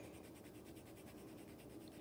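Coloured pencil scratching faintly across paper in quick, repeated shading strokes.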